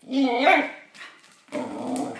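Shikoku dog 'talking': a short warbling call whose pitch bends up and down, then, about one and a half seconds in, a lower, rougher growly sound.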